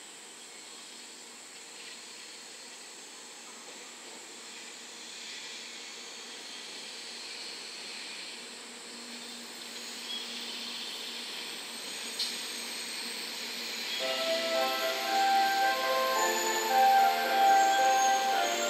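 A JR West 700 Series RailStar Shinkansen rolls slowly along the platform as it pulls in, giving a soft, steady running hiss with a single sharp click about twelve seconds in. About fourteen seconds in, a melody starts and grows louder.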